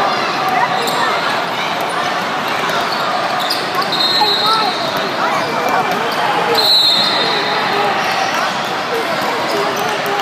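Basketballs bouncing on the court amid a steady hubbub of many voices echoing in a large hall. Two short, shrill referee's whistle blasts sound, about four seconds in and again about three seconds later.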